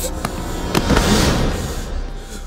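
A couple of sharp bangs, the second followed by a longer, noisy crash-like rush, over background music.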